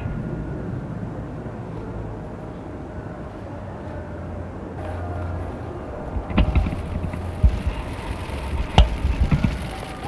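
Steady low outdoor rumble of wind and distant traffic. From about six seconds in, a scattering of sharp, irregular clicks and knocks comes in, the loudest just before the end.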